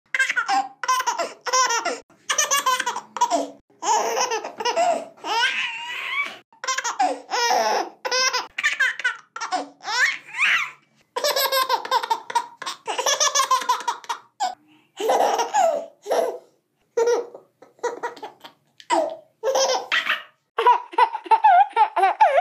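A baby laughing: a long run of short, high-pitched laughs with brief pauses between them.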